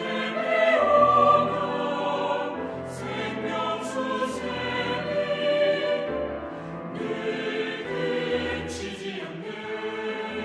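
Four-part mixed choir singing a sacred anthem in Korean with piano accompaniment, loudest about a second in.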